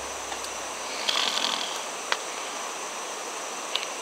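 Steady outdoor night background hiss, with faint rustling about a second in and a few soft clicks.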